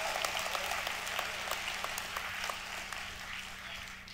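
A congregation applauding, the clapping gradually dying away.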